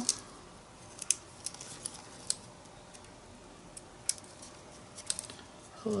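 Scattered light clicks and ticks as a pointed craft tool picks at the paper liner of double-sided tape on the back of a small paper embellishment.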